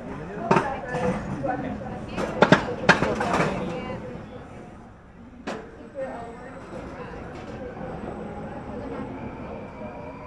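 Gerstlauer Euro-Fighter roller coaster train rolling out of the station onto its vertical chain lift, with sharp metal clanks, the loudest a quick pair about two and a half seconds in and two more around five and six seconds. After that comes a faint steady drone from the lift. Riders' voices can be heard in the first half.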